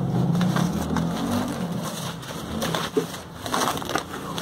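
Thin plastic wrapping bag crinkling and rustling as hands pull a product out of it, a dense run of crackles that is loudest in the first couple of seconds and tails off.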